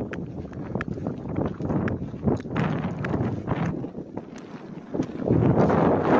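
Footsteps on dry, stony ground, about two crunching steps a second, with wind buffeting the phone's microphone. The wind noise swells near the end.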